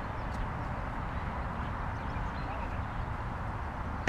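Steady outdoor background noise with a low rumble and no distinct event.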